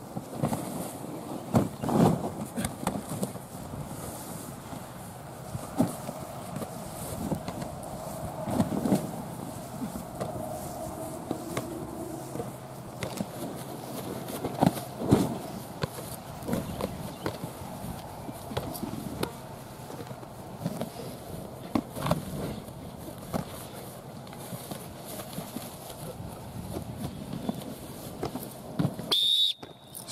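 Outdoor training ambience: scattered thumps and knocks from players working with tackle bags and exercise balls, with faint distant voices. Near the end comes a short, high coach's whistle blast, the signal to switch stations.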